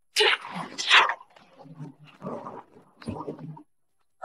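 Water splashing onto stone steps as a basin is tipped out, loudest in the first second. Short wordless gasps and murmurs follow.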